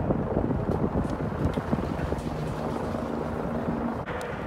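Wind buffeting the phone's microphone, a steady low rumbling rush, with a faint steady hum entering in the second half.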